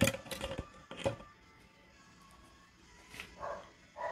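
A few sharp clicks and light knocks in the first second as a small paintbrush is picked out from among others, over faint background music. A short faint sound follows about three seconds in.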